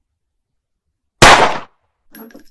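A single handgun gunshot, a sound effect edited into the scene, coming about a second in: one sharp, very loud crack that dies away within half a second.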